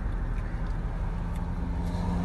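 Road traffic noise: a steady low rumble of vehicle engines, with a faint low engine hum coming in about halfway through.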